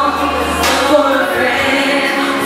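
Music: a group of voices singing together in held notes over a steady low accompaniment.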